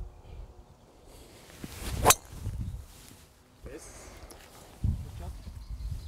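Golf driver striking a ball off the tee: a short swish of the swing, then one sharp crack of impact about two seconds in.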